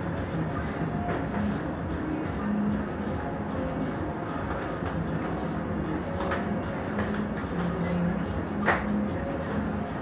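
Steady background noise of a small shop with indistinct, faint voices, and a single sharp tap or click a little before the end.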